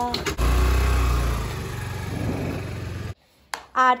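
Motor scooter's small engine starting with a click and running, loudest for the first second and then easing off, until the sound cuts off abruptly about three seconds in.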